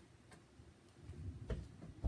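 Faint handling noise from a book being held up and moved: a few sparse light clicks, then low rumbling bumps in the second half.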